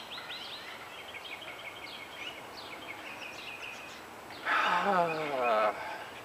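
A bird repeats short high chirps, several a second, for the first three or so seconds. Near the end a man gives a drawn-out voiced sigh that falls in pitch.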